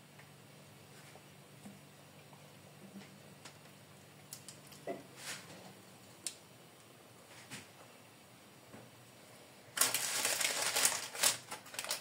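Faint handling sounds and a few soft clicks while thick cake batter is poured from a glass bowl into a paper-lined metal baking pan. Near the end comes a loud rattling, rustling stretch as the filled pan is handled on the stone counter, its parchment lining crinkling.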